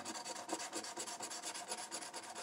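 A coin scraping the coating off a lottery scratch-off ticket in rapid, even back-and-forth strokes.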